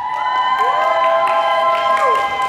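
Several high-pitched young women's voices cheering with long, overlapping held 'woo' shouts that rise at the start and fall away at the end.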